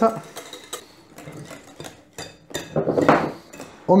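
Wire whisk clicking and scraping against glass bowls as beaten egg whites are scraped out and folded into mayonnaise, with light taps throughout and a longer scrape about three seconds in.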